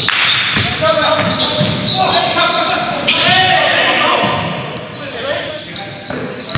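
Basketball game in a gymnasium: a ball bouncing on the hardwood floor with sharp impacts throughout, and players' voices calling out, all echoing in the large hall.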